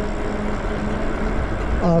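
Steady wind rush and road noise from a Lyric Graffiti e-bike cruising on pavement, with a faint steady hum underneath.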